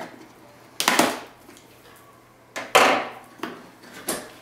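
Scissors slicing through the packing tape on a cardboard box: two short noisy strokes, nearly two seconds apart.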